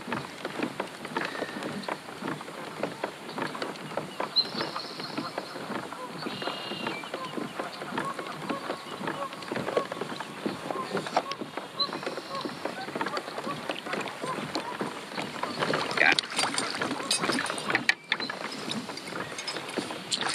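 Water splashing and lapping around a kayak hull, with clicks and knocks of fishing gear as a hooked kokanee is reeled in and landed. The splashing and knocking grow livelier near the end as the fish reaches the net.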